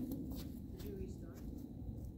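Quiet outdoor background: a low rumble on the phone's microphone with a few faint scuffs and a faint voice about a second in.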